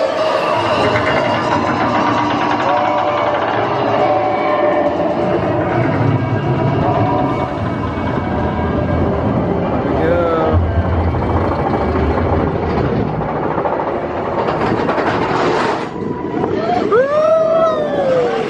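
Expedition Everest roller coaster train running along its steel track, a steady rumble of wheels on the rails. A short yell about ten seconds in, and a rider's rising-and-falling scream near the end.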